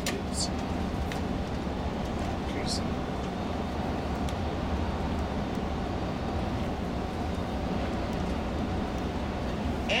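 Tour coach cruising on a motorway, heard from inside the cabin: a steady low rumble of engine and tyres on the road, with a faint steady hum.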